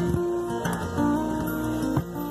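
Acoustic guitar and electric bass playing a live instrumental passage, with the chord changing about a second in.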